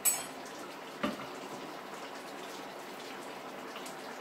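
A pan of meatballs in tomato sauce simmering on the hob, a steady bubbling sizzle. A sharp metal clink of a serving utensil right at the start and a softer knock about a second in.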